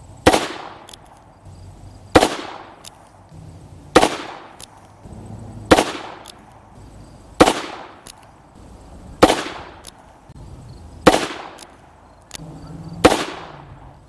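Eight shots from a Rock Island Armory AL22M .22 Magnum revolver with a four-inch barrel, fired at a slow, even pace about two seconds apart, each a sharp crack with a brief decaying tail. Faint clicks come between the shots.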